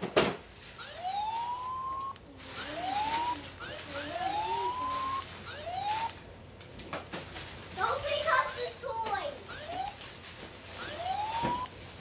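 Electronic siren sound effect from a battery-powered toy: a string of short rising whoops, repeating every second or so.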